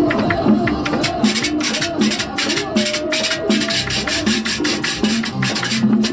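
Merengue music with a güira, a metal scraper, rasped in even strokes about four a second, starting about a second in, over the low drum and bass groove.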